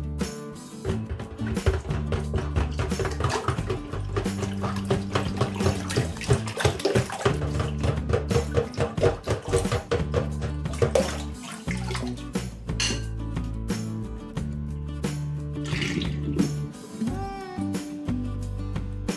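Background music with a steady bass line over water splashing and sloshing in a filled stainless-steel sink, as a glass pot lid is pumped up and down over the drain like a plunger to force out the clog. The splashing dies away after about eleven seconds.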